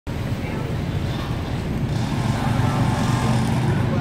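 Steady low rumble of city traffic, with faint voices mixed in.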